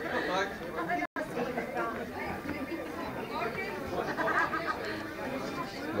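Crowd chatter: many guests talking at once. The sound cuts out for an instant about a second in.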